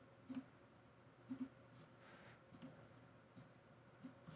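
Faint computer mouse clicks, a few of them about a second apart, over quiet room tone.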